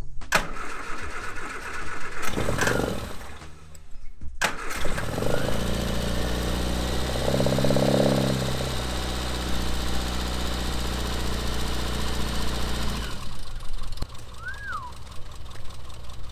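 Classic Mini engine being started: a few short bursts of cranking, then it catches about four and a half seconds in and runs, swelling as it is revved, before dropping back to a steady idle about thirteen seconds in. It runs without squealing and sounds almost brand new.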